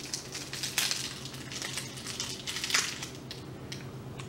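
Crinkling of a candy wrapper as an individually wrapped fizzy orange boiled sweet is unwrapped by hand, in irregular crackles.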